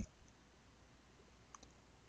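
Near silence: room tone, with two faint small clicks about three-quarters of the way in.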